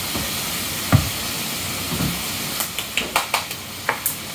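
Steady background hiss with a single thump about a second in, then several light, sharp clicks of a metal fork against a ceramic plate in the last second and a half.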